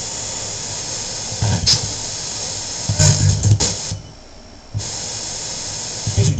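Spirit box radio sweeping through stations: a steady hiss of static, broken twice by short louder snatches of broadcast voice, and cutting out for under a second near the end before the static resumes.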